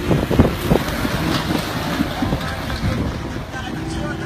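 Wind buffeting the microphone, with heavy thumps in the first second, over the sound of a Jeep Wrangler driving off-road across a rough grassy slope.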